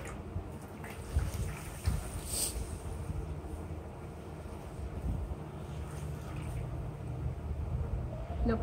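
A wet foam sponge pressed down repeatedly into water in a glass bowl: soft squelching and handling noises with a few light knocks, over a steady low rumble.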